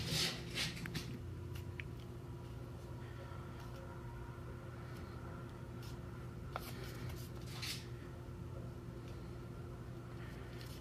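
Fingers rubbing and shifting grip on a plastic supplement jar as it is turned in the hand, brief scratchy rustles near the start and again about seven seconds in, over a steady low hum.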